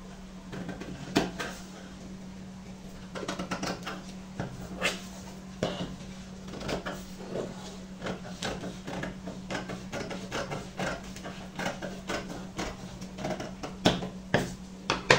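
Large steel scissors snipping through a paper pattern, a run of irregular crisp cuts with the paper rustling between them.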